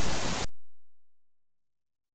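A loud wash of distorted static-like noise from an effects-edited logo soundtrack fades and cuts off abruptly about half a second in, followed by silence.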